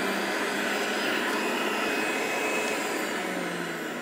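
Breville Juice Fountain centrifugal juicer running steadily with a motor hum and a whirring spin. The hum drops a little in pitch about three seconds in, and the sound eases slightly.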